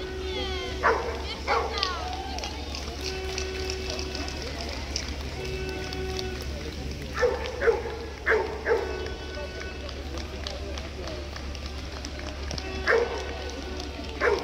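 A dog barking in short bursts: twice about a second in, four times a little past the middle, and once near the end, over steady background noise.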